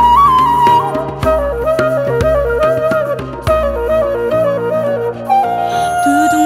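Instrumental passage of Korean traditional chamber music (gugak): a transverse bamboo flute plays the ornamented melody, bending into its notes, over drum strokes and a low accompaniment. The melody steps down to a lower register about a second in.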